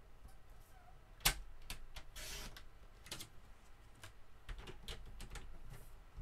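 Paper trimmer cutting cardstock: a sharp click about a second in, then the blade sliding through the card in a short rasp, followed by several lighter clicks and taps as the card and trimmer are handled.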